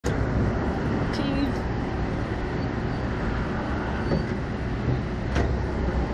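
Steady low rumbling background noise with faint voices, and a single sharp click near the end.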